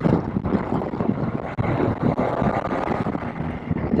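Wind rushing over a helmet-mounted microphone, with the Triumph Tiger 800 XRX's three-cylinder engine running underneath at road speed.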